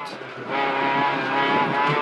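Peugeot 206 RC Group N rally car's 2.0-litre four-cylinder engine running hard at speed, heard from inside the cabin and getting louder about half a second in.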